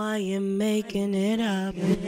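A held, pitched drone with overtones playing through Ableton Live's Echo effect, breaking off briefly twice. Near the end a hiss from Echo's Noise section, which is being turned up, begins to rise under it.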